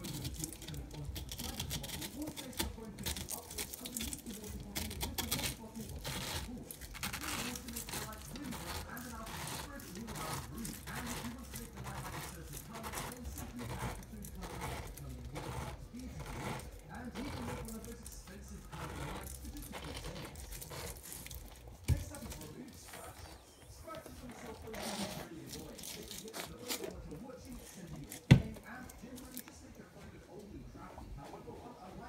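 Stainless-steel pineapple corer-slicer twisted down through a pineapple, its blade cutting the flesh with a long run of short crunching, tearing strokes. Two sharp clicks stand out, one about two-thirds of the way through and a louder one near the end.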